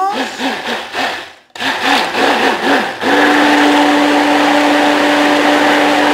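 Handheld electric blender beating an egg, milk and cream mixture in a jug. Its motor pitch wavers up and down about four times a second as it works through the liquid, stops briefly, then runs at one steady pitch from about halfway through.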